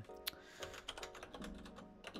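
Computer keyboard typing: a quick, uneven run of key clicks while code is entered, over quiet background music.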